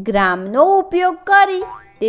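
Speech: a lively voice talking with its pitch sliding up and down, over light background music.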